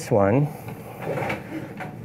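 Faint handling noise of a photo light stand and umbrella being taken hold of: light knocks and rubbing, with no loud impact.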